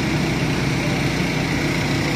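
A steady low engine-like drone that holds even throughout.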